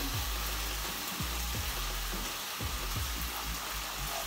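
Diced bacon strips sizzling steadily as they fry in a pan, pushed about and separated with a wooden spatula.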